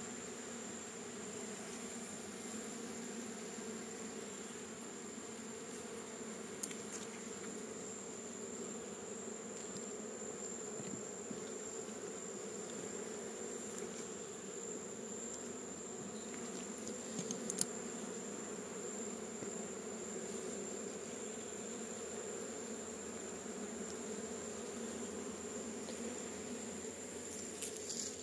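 Honeybees buzzing in a steady, dense hum from a strong colony in an open hive box, with a few faint clicks.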